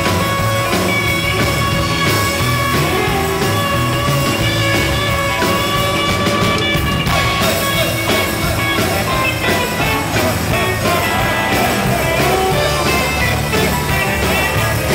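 Live rock band playing, with a Les Paul-style electric guitar taking a lead line of held, bending notes over the drums.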